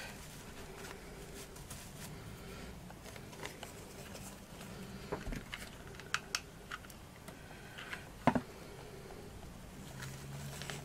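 Faint rustling and light taps of hands handling artificial moss pieces and fabric leaves on a cutting mat, with a few sharper clicks, the loudest about eight seconds in.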